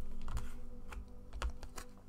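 Tarot cards handled on a desk: a few light, scattered clicks and taps as a card is drawn from the deck.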